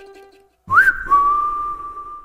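The last guitar chord rings out, then a single whistled note comes in with a quick upward slide and is held steady for over a second.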